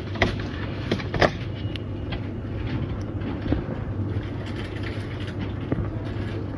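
Shop background noise: a steady low hum with a few light clicks and knocks.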